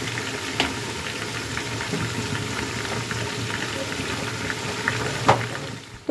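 Chicken pieces deep-frying in hot mustard oil in a kadai: a steady dense sizzle with scattered small pops, one louder pop about five seconds in.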